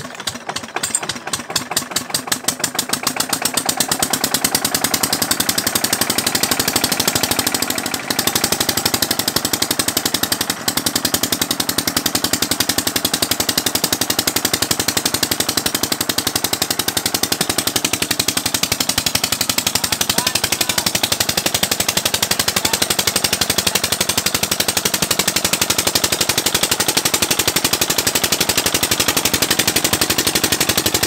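Single-cylinder stationary diesel engine with a heavy flywheel firing up to drive a tubewell pump: its exhaust beats quicken and grow louder over the first few seconds, then it runs at a fast, even knock.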